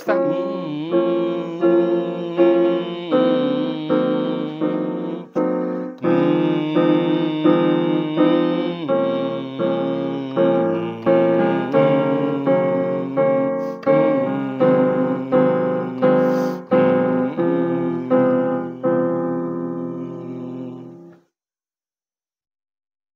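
Piano played slowly: chords and a melody, notes struck about twice a second, each ringing and fading, stopping about a second before the end.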